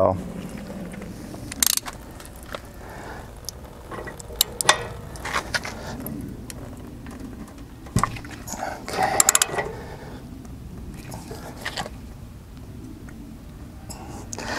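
Socket wrench and extension clicking and knocking against the RV water heater's anode rod as it is fitted and worked loose, scattered metallic clicks with a quick run of clicks about nine seconds in.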